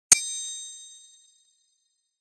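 A single bright metallic ding, struck once and ringing high before dying away over about a second: a chime sound effect on an intro title card.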